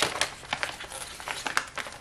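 A folded paper price sheet crinkling and rustling as it is unfolded and flattened by hand: a quick run of sharp crackles, loudest at the start.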